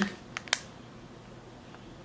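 Two short, light clicks about half a second in as a small white plastic pouch is handled with long fingernails, then quiet room tone.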